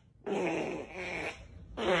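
A recorded noise played out loud through a phone's speaker for about a second, with a short word of speech near the end.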